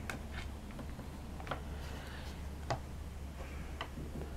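Quiet handling of a fabric cushion on a cutting mat: a few faint, scattered clicks and light rustles as hands press the glued lace trim down and pick the cushion up, over a steady low hum.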